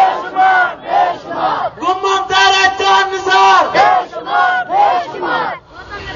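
A crowd of men chanting slogans in loud, rhythmic shouted phrases, some with long held notes. The chanting breaks off shortly before the end.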